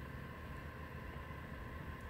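Steady low background hum with a faint hiss, with no distinct events.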